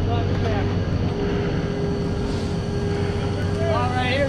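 Doppelmayr fixed-grip quad chairlift's bottom drive terminal running with a steady low hum as the chairs come round the bullwheel.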